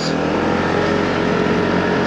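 Motorcycle engine running steadily while the bike is ridden through a junction, heard from on the bike under a steady rush of wind and road noise.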